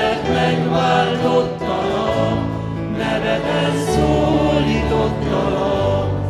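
A church worship group of mixed men's and women's voices singing a hymn together, accompanied by acoustic guitar.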